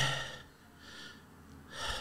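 A man breathing in a pause in his talk: a faint breath about a second in, then a short inhale near the end.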